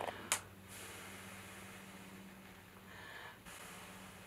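A person blowing steadily into the mouth of a plastic water bottle, forcing air through a soap-soaked washcloth stretched over its cut end to push out a bubble snake. After a short click at the start, it is one long, faint breath of about three seconds that stops abruptly shortly before the end, over a low steady hum.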